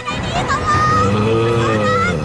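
Cartoon soundtrack music with a drawn-out voiced groan that rises and then falls in pitch in the second half.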